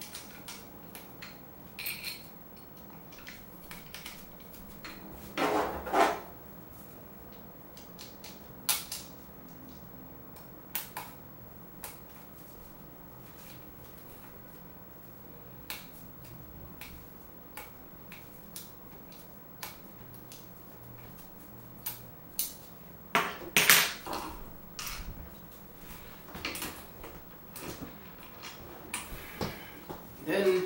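Handling noise from a scooter wheel and tire being worked by hand: scattered clicks and knocks. There are two louder stretches of scraping, about five seconds in and again near twenty-three seconds.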